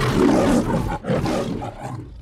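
The MGM logo's lion roaring twice in quick succession, each roar about a second long, with a brief break between them.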